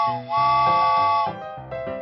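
Cartoon steam-train whistle sounding two chord-like toots, the second held for about a second. Bouncy music with short repeated notes, about three or four a second, follows about halfway through.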